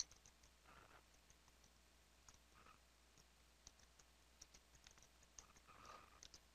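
Faint computer keyboard typing: scattered light key clicks at an uneven pace, with one sharper click right at the start.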